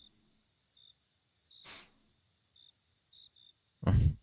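Faint crickets chirping in short, irregular high pulses over a steady high hum, with one brief soft whoosh a little under two seconds in.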